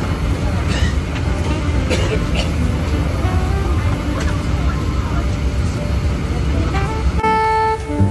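Airliner cabin ambience: a steady low hum with passengers talking, and a man coughing a few times in the first few seconds. Background music comes back in near the end.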